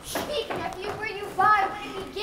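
Young actors' voices speaking lines of dialogue.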